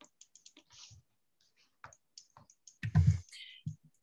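Faint, scattered clicking of computer keys, with a louder knock about three seconds in.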